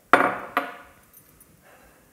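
A spatula knocking twice against a stainless steel saucepan, about half a second apart. The first knock is the louder one and rings briefly.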